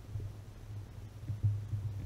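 Low, dull bumping and rumbling from hands working at a fly-tying vise close to the microphone, in uneven pulses with the strongest bump about a second and a half in.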